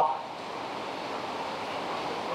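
A spoken word ends right at the start, then a steady, even background hiss like wind or distant surf, with no distinct events.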